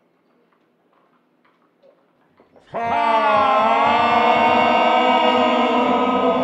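Near silence, then about three seconds in a man's scream starts abruptly, slowed down into a long, deep, drawn-out cry whose pitch dips briefly and then holds.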